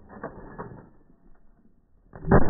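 A few faint, sharp mechanical clicks in the first second or so, then a quieter stretch.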